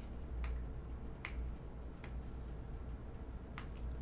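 A handful of sharp, isolated clicks at irregular intervals, the clearest about half a second and a second and a quarter in and two close together near the end, over a steady low hum.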